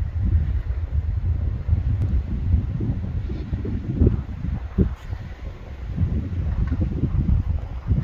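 Wind buffeting the microphone: a low, gusty rumble that swells and drops irregularly.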